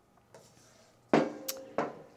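Faint scraping of a wooden spatula stirring vegetables in an electric wok, then three sharp knocks with a short ringing about a second in, the first the loudest, as the spatula and a small sauce bowl knock against the wok and the table.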